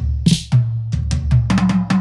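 Reggae backing track playing: a drum kit with kick and snare hits over a low bass line.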